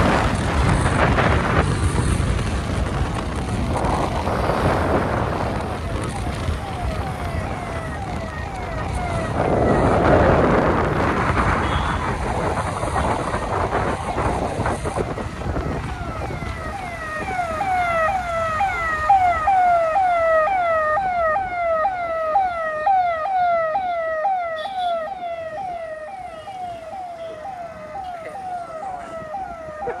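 Ambulance siren: a quickly repeating falling wail, about two cycles a second, faint at first and growing louder and clearer over the second half as the vehicle draws close. Under it in the first half, a loud low rumble of wind and road noise from the moving two-wheeler.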